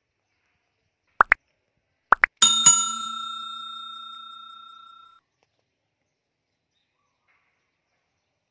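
Subscribe-button reminder sound effect over otherwise silent audio: two pairs of short rising pops about a second apart, then a single bright bell ding that rings out for about three seconds.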